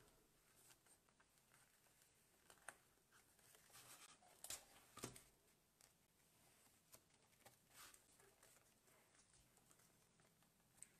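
Near silence with faint handling sounds: twine and the pages of a spiral-bound art journal being moved about on a tabletop, with a few faint taps and clicks, the sharpest about five seconds in.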